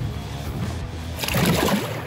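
Water sloshing and splashing as a musky is lowered into the water by hand and released, with a louder splash over a second in. Background music plays underneath.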